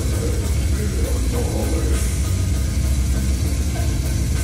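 A live heavy band playing loudly: electric bass, guitar and drum kit, with a dense, heavy low end and no vocals.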